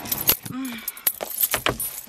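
Handling noises from small objects being moved about: several sharp clicks and a brief metallic jingle near the end, with a short murmur of voice about half a second in.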